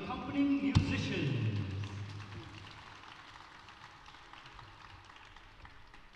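Closing bars of a live ghazal: a held sung and harmonium note, then a single sharp tabla stroke about a second in. The stroke's low, slightly falling bass tone rings and dies away over a couple of seconds, leaving a faint reverberant tail.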